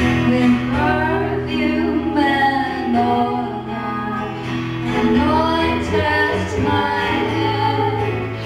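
Women's voices singing a hymn in close harmony, holding long notes, over a steady low accompaniment.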